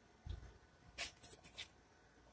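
Faint handling sounds of small tools and parts on a workbench: a soft knock, then a few light scratchy clicks as a drill bit is picked up.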